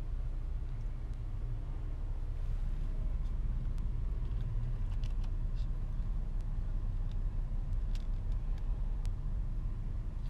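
Steady low rumble of a car heard from inside its cabin, the engine and road noise of city driving, with a few faint clicks scattered through it.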